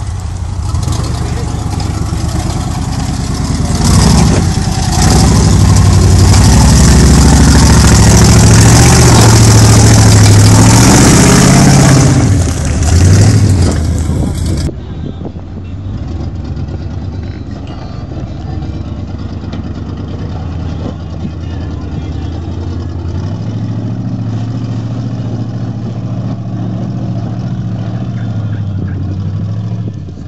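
Off-road Jeep engines working under load on rocks. For the first half, the V8 Jeep Wrangler's engine revs hard, its pitch rising and falling and loudest in the middle. After a cut, a second Jeep's engine runs more quietly and steadily as it climbs a rocky slope.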